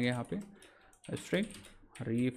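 Typing on a computer keyboard: a run of quick key clicks.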